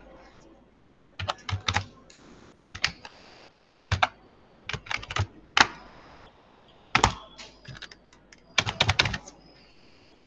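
Computer keyboard keystrokes, typed in short irregular bursts of clicks with brief pauses between them.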